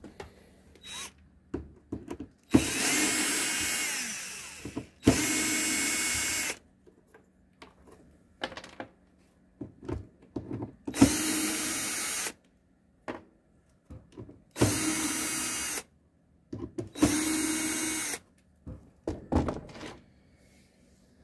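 Power drill running in five short bursts of one to two seconds each, with a steady motor whine, driving screws as spacers into the wooden frame of an observation hive. Small clicks and knocks of handling come between the bursts.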